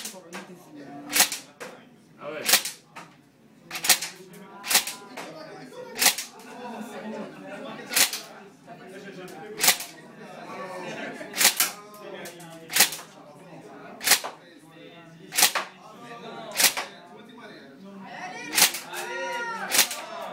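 AR-style airsoft rifle firing single BB shots, about fifteen sharp reports spaced a second or so apart.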